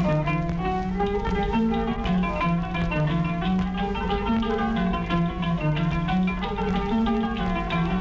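Turkish art-music ensemble, led by plucked strings, playing the instrumental introduction to a song in makam Uşşak. A quick, busy melody runs over a steady lower line.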